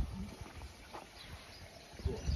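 Faint footsteps and light taps on stone paving slabs.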